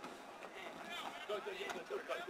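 Faint voices of several people talking in the background.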